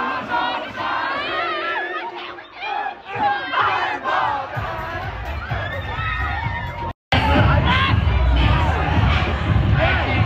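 A crowd of teenagers shouting and cheering on a dance floor. The sound cuts out briefly about seven seconds in, then loud, bass-heavy dance music comes in under the shouting voices.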